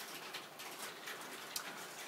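Quiet classroom room tone: a faint steady hiss with a few soft clicks.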